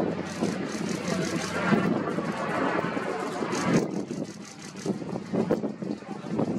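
Bombardier Dash 8 Q400 turboprop climbing away after takeoff, its two Pratt & Whitney PW150A engines and propellers droning steadily, then growing fainter from about four seconds in as it recedes.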